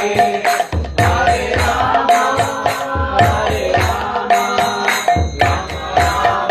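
Devotional chanting sung to a hand drum keeping a steady beat; the drum drops out briefly twice, just before one second and about five seconds in.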